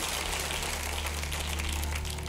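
Studio audience applauding, with a steady low hum underneath.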